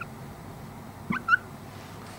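Dry-erase marker squeaking on a whiteboard while writing: two short, high, rising squeaks a little over a second in, over faint room hiss.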